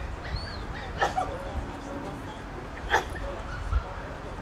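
Dog barking twice, single barks about two seconds apart.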